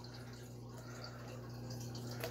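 Faint handling sounds of paper being folded down over the rim of a tin can, over a steady low electrical hum.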